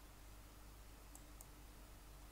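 Near silence: room tone, with two faint clicks a little after a second in, a computer mouse clicking to advance the slide.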